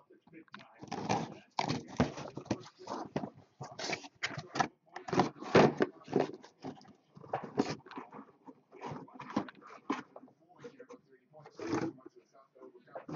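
Cardboard card boxes being pulled out of a cardboard shipping case and stacked: a busy run of irregular scrapes, knocks and rustles of cardboard.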